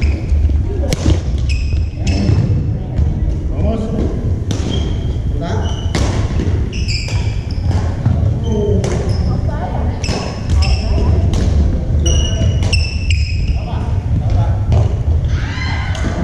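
Badminton rally on a hardwood gym floor: rackets strike the shuttlecock with sharp pops every second or two, and sneakers squeal in short bursts as the players move, all echoing in a large hall.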